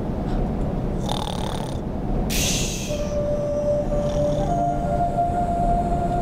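A cartoon bear snoring: a low rumble with breathy hisses. Held musical notes come in about halfway through.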